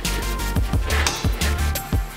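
Electronic backing music with a steady, heavy bass beat and held synth tones.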